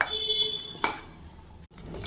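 A metal spoon knocks against a stainless steel bowl, which rings briefly for about half a second. A second knock comes just under a second in, while the grated potato mixture is being stirred.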